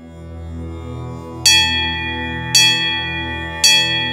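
Instrumental intro to a devotional song: a sustained drone swells in, then a bell is struck three times about a second apart, each strike ringing on over the drone.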